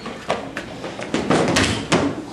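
A quick run of thuds and knocks, bodies and feet hitting a hard tiled floor in a scuffle, loudest in the second half.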